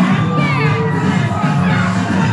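Party crowd noise, children shouting and chatter over music with a steady bass line; a child's high shout rises and falls about half a second in.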